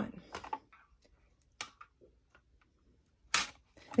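Clear plastic cutting plates and a die being shifted into place by hand on a die-cutting machine's platform: a few light clicks and taps, then a short, louder scrape near the end.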